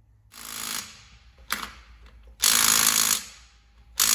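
Cordless impact wrench run in short bursts, tightening nuts on an ATV's rear wheel: a half-second burst, a brief blip, then a longer, louder burst of hammering.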